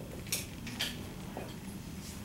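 Dry-erase marker writing on a whiteboard: two short scratchy strokes, about a third of a second and just under a second in.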